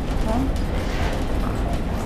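Steady low rumble inside a moving aerial cable car cabin, with faint voices in the background.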